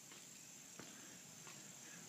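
Near silence outdoors: a faint, steady, high-pitched trill of crickets, with a couple of soft footsteps.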